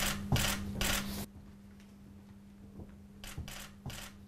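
Short paper rustles and rubbing as a voting envelope is handled and slid into the slot of a clear plastic ballot box: three sharp rustles in the first second, then a few fainter ones near the end. A low steady hum sits under the first second and stops abruptly.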